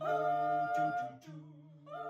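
A cappella voices humming sustained chords. A chord enters at the start and is held over a steady low note, the upper voices drop away a little over a second in, and a new chord comes in near the end.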